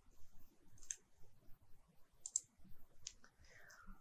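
Faint computer mouse clicks, a few short clicks spaced out over a few seconds.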